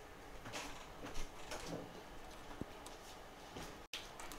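Faint, scattered clicks and light taps of an iPhone 7 Plus logic board and housing being handled and fitted together by hand.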